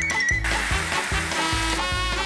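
Background music with a steady bass line. About half a second in, the hiss of water spraying from a garden hose nozzle into a plastic bucket joins it and stops just before the end.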